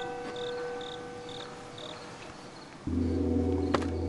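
Crickets chirping in short regular pulses, about two a second, under the fading ring of a struck metallic tone from the score. Near the end a low, steady music drone comes in and becomes the loudest sound.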